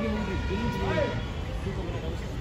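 Indistinct voices of several people talking at once, none of it clear words, over a low steady rumble.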